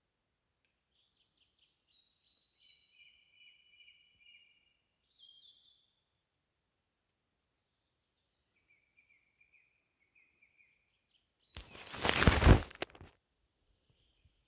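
Faint bird song in two short phrases, then a loud rushing burst of noise lasting about a second and a half near the end.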